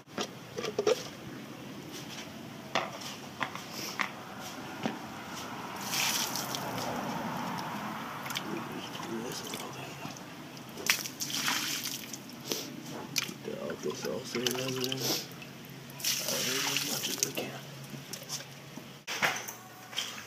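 Fresh water splashing in and out of an open camera water housing as it is rinsed and emptied into a plastic tub, in three short spells, with clicks and knocks from the housing being handled.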